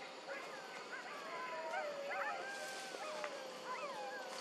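Several macaques calling over one another: wavering, gliding coos and squeals, some held for about a second. A steady high hiss comes in about halfway through.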